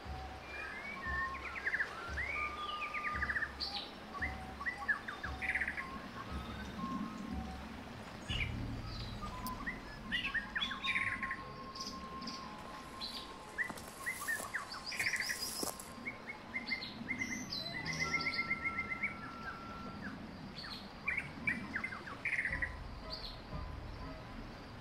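Several birds chirping and singing in quick, overlapping calls and trills, a forest birdsong ambience over a low rumble.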